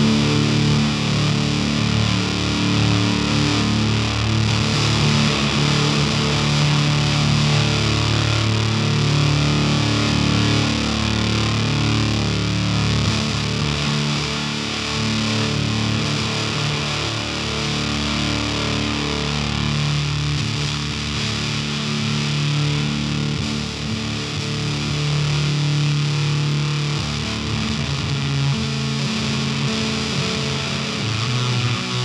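Electric guitar played through the Damnation Audio Ugly Twin fuzz pedal with delay added: thick, heavily fuzzed held notes and chords, loud and sustained throughout, with a lot of low-end weight from the pedal's tone stack.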